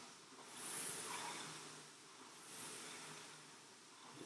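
Concept2 rowing machine's air flywheel whooshing faintly, swelling twice with two drive strokes at an easy, steady pace.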